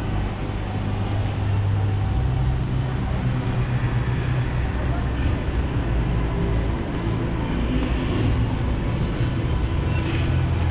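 City street ambience: a steady low rumble of road traffic with indistinct voices of passers-by mixed in.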